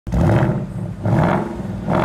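A car engine revving in three surges about a second apart, used as an intro sound effect.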